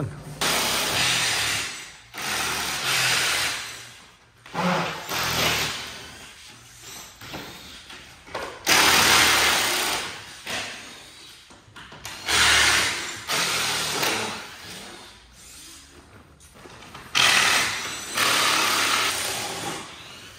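Cordless drill running in repeated bursts of a second or two, backing the screws out of a wooden vehicle shipping crate to open it.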